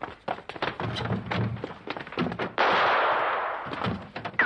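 Fast, irregular knocks and thumps as people run and scuffle. About two and a half seconds in comes a sudden loud crash-like burst of noise that lasts about a second before fading.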